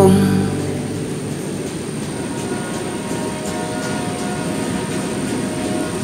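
The last chord of the song dies away in the first half-second. It leaves a steady rumble of a train rolling along the rails, with a few faint ticks.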